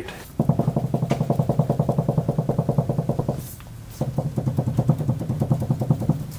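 Rapid mechanical pulsing, about ten beats a second with a buzzing pitch, in two bursts separated by a short break a little over three seconds in.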